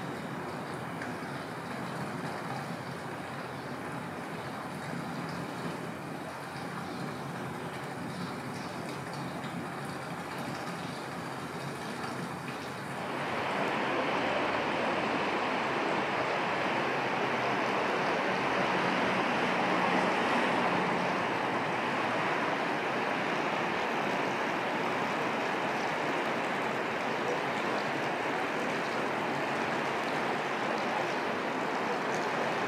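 Steady wash of sea waves on a beach, growing louder about thirteen seconds in.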